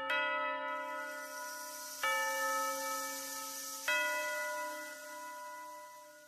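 A bell struck three times, about two seconds apart, each strike ringing on and slowly dying away; the last one fades out.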